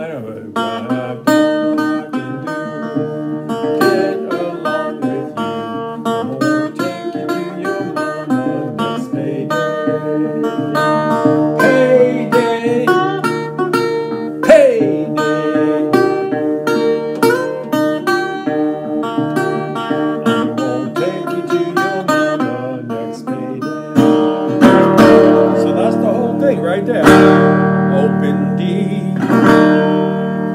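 Steel-bodied resonator guitar in open D tuning, played fingerstyle: picked melody notes over a sustained low bass. There are sliding pitch glides in the middle, and the playing grows louder and fuller near the end.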